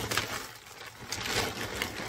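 Plastic packaging rustling and crinkling in irregular bursts as it is handled and opened.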